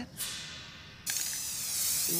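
Hiss of water spraying down from an indoor rain effect, starting suddenly about a second in after a short fading swish.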